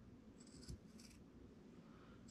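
Scissors cutting perforated upholstery material: two faint snips about half a second apart, in near silence.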